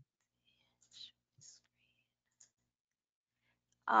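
Near silence on a video-call audio line, broken by a few faint short clicks and rustles about one to two and a half seconds in. A voice starts at the very end.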